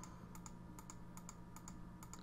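Faint clicks of computer keyboard keys, a quick uneven run of taps, over a low steady hum.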